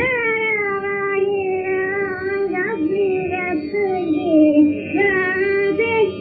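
A woman singing a Hindustani raga, drawing out long held notes that bend and slide between pitches, over a steady drone.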